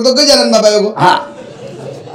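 A man's voice through a microphone, drawn out on held, level pitches, breaks off about a second in with a short, loud breathy burst, after which only low background remains.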